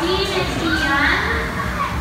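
Children's voices and chatter, with people talking, in a busy indoor play area.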